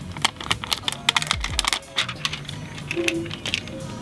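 Irregular small clicks and taps from hands working on a cut-in-half BMX frame and its Flex Tape, with a dull low thud about a second and a half in.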